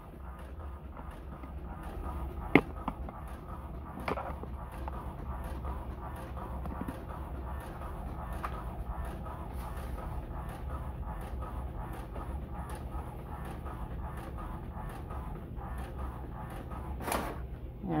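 Home inkjet printer printing a sheet of cardstock: a steady mechanical whirr with a regular pulse as the print head shuttles across the page. A sharp click comes a couple of seconds in.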